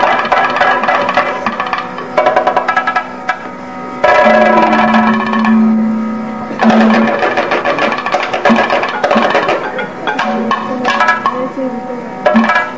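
Kathakali accompaniment: drums struck in quick, dense strokes with small cymbals ringing, over a steady drone and long held sung notes.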